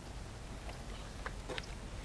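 A few faint, light taps of footsteps on wooden boardwalk planks over a low, steady outdoor background.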